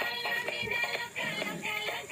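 Battery-operated dancing toy figure playing an electronic tune with a synthesized singing voice, in short steady notes that step from one pitch to the next.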